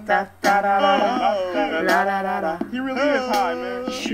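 A woman singing in long held notes that bend and slide in pitch, with a short gap near the start.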